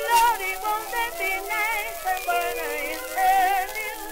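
Early acoustic jazz band recording from 1921, played from a 78 rpm shellac disc: several wavering melody lines at once, with a thin sound that has almost no bass.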